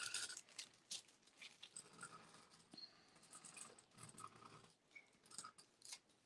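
Faint scratching of an ink pen tracing over a paper template and graphite paper, in short irregular strokes.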